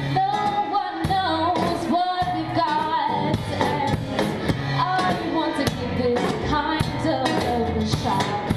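Live acoustic band playing a song: a woman's voice singing the melody over strummed acoustic guitar and a drum kit played with sticks.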